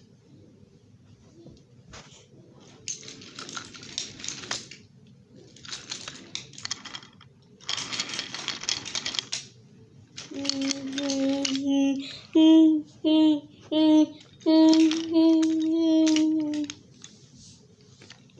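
A toy train clicking and rattling as it rolls along wooden track, in three spells. From about halfway, a louder hum-like tone on one steady pitch comes in several blasts, a long one, three short ones, then another long one.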